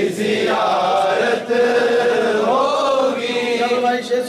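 A man singing a naat unaccompanied into a microphone, in long drawn-out notes that slide and waver in pitch.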